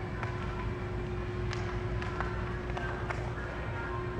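Steady low indoor background hum with a faint steady tone, broken by a few light clicks.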